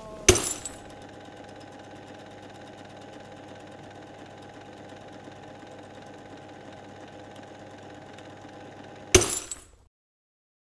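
A steady mechanical hum with fast, faint ticking, opened by a loud short burst of noise just after the start and closed by another about nine seconds in.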